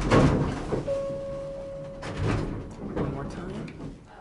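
Otis hydraulic elevator doors sliding with a loud rumbling clatter at the start and again a little after two seconds, with a steady single-pitched tone lasting about a second in between.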